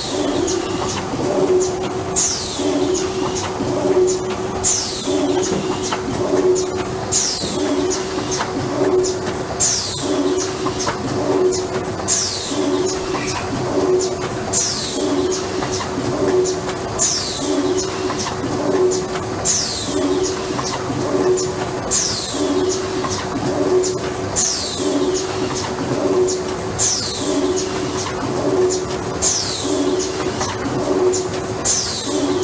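AFM 540A semi-automatic box-lid making machine running in a steady cycle about every two and a half seconds: each cycle brings a sharp hiss of air that falls in pitch and a run of clicks from the pneumatic grippers, over a steady machine hum.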